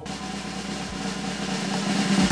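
Snare drum roll, growing steadily louder as it builds.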